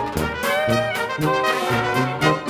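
Broadway pit orchestra music led by its brass section, with trumpets and trombones playing accented chords in a quick, punchy rhythm over the band.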